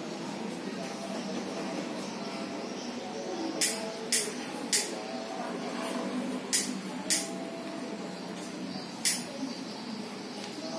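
Faint, steady background murmur of distant voices, broken by six short, sharp hisses between about three and a half and nine seconds in.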